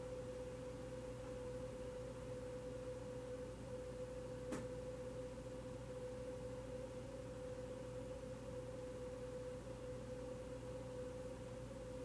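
A faint, steady single-pitched tone that holds without change, over a low background hum, with one small click about four and a half seconds in.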